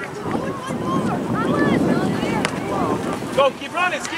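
Overlapping shouts and calls from youth soccer players and sideline spectators, with wind rumbling on the microphone. A single sharp click sounds about two and a half seconds in.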